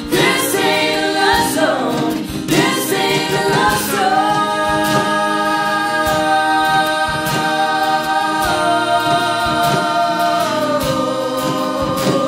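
Live acoustic folk band singing in vocal harmony over acoustic guitar and fiddle. From about four seconds in, the voices hold one long chord, which moves to a lower one near the end.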